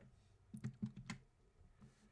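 A few faint clicks of a computer keyboard, about four in quick succession starting about half a second in, then a couple of fainter taps.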